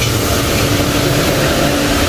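Steady machine noise of commercial kitchen equipment: an even rushing hiss over a low rumble, with one steady low hum.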